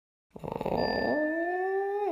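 A cartoon cat sound effect: one long drawn-out meow that starts about a third of a second in and rises slowly in pitch.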